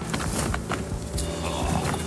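Rubbing, creaking and small knocks of an inflatable Challenger kayak's vinyl hull and its paddle, handled at the water's edge as a man grips the sides and starts to climb in.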